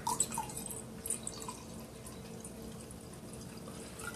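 A thin stream of liquid poured from a glass jug into a stemmed drinking glass. A few brief splashes come in the first second, then a faint, steady trickle.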